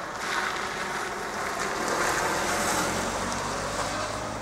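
A car driving past close by after crossing the tracks: tyre and engine noise swells, is loudest past the middle, and fades away near the end.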